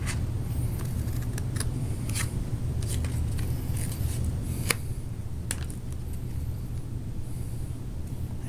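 Scissors snipping through thin shoebox cardboard, a string of short, irregularly spaced cuts with light rustles as the piece is turned, over a steady low hum.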